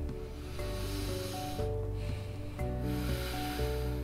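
A woman taking a slow, deep breath: an airy breath in, a short pause about one and a half seconds in, then a long breath out, with her lower jaw held forward in a mandibular positioning gauge to open the airway. Soft background music with sustained notes plays underneath.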